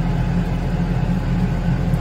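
Farm tractor engine with a front loader, running steadily with a low, even rumble.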